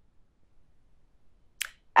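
Near silence of a held breath in a small room, then one short mouth click near the end as the lips part just before speaking.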